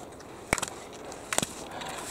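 Slalom skis scraping on hard snow through the turns, with two sharp clacks about a second apart as the skier knocks gate poles aside.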